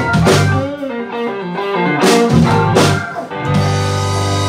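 A live blues-rock band with electric guitar, electric bass, drum kit and keyboards. About half a second in, the bass and low end drop away and a run of single electric-guitar notes plays over a few drum hits. The full band comes back in near the end.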